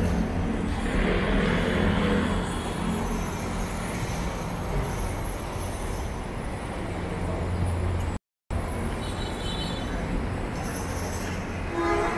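Steady city traffic noise with a low engine rumble from vehicles on the road below. The sound cuts out completely for a moment about eight seconds in.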